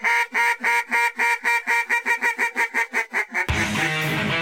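A rapid run of duck quacks, about six a second, broken off by electric guitar music starting about three and a half seconds in.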